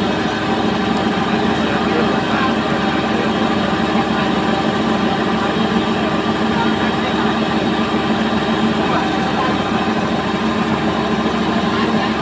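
Fieldking combine harvester running steadily while its unloading auger pours threshed paddy into a trailer: an even engine and machinery hum that does not change.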